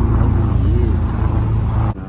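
Loud, steady low rumble with a faint hum of voice over it, cutting off suddenly just before the end.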